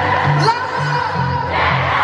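Live rock band music with a stepping bass line, under an arena crowd cheering and screaming, recorded from within the audience. A short rising scream stands out about half a second in.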